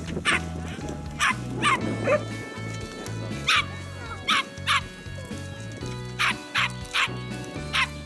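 A small dog barking in short, sharp yaps, about eleven times, several in quick pairs, over background music with a steady bass line.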